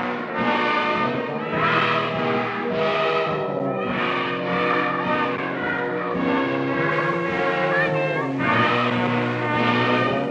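Instrumental background music of sustained, layered chords that change every second or so.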